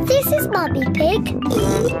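A cartoon pig voice oinking, starting suddenly, over upbeat children's background music.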